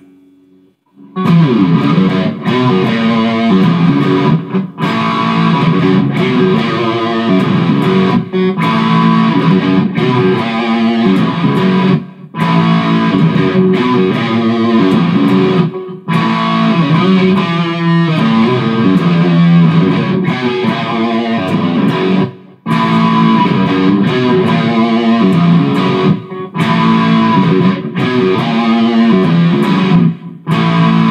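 1970 Gibson SG Junior electric guitar played with a 3D-printed hemp pick through a Fender Mustang II amp, with distorted riffs. It starts about a second in and stops briefly every few seconds between phrases.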